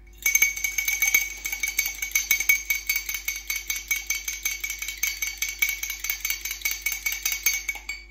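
A metal fork beating a raw egg in a drinking glass: fast, even clinking of the fork against the glass, several strokes a second, with the glass ringing. It starts just after the beginning and stops just before the end.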